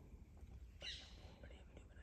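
Near silence with a brief, hushed whisper about a second in.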